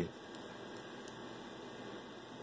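Faint steady hiss with no distinct sounds in it.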